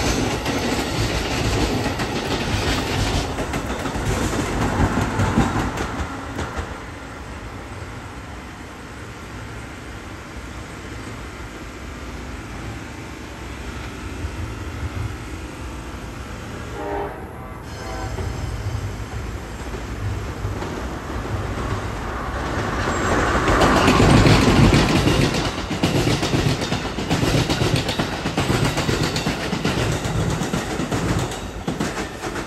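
Amtrak electric trains passing close by on the Northeast Corridor tracks: a train of coaches rolls past at first and fades, a short horn note sounds about halfway through, then another train draws near and goes by, loudest a little over two-thirds of the way in.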